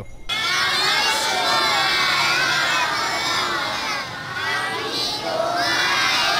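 A crowd of children shouting and cheering together, many voices at once. It starts abruptly just after the opening and carries on loud and steady.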